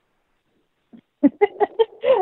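About a second of silence, then a person's short, choppy laugh near the end.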